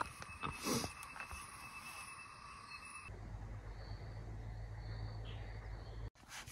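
Faint insects calling in the evening forest, in thin steady high tones. About three seconds in, a low steady rumble comes in under them.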